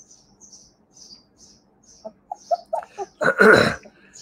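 A short, harsh cough-like sound near the end, about half a second long and the loudest thing heard. Before it come faint soft high puffs, about three a second, and then a few brief faint squeaks.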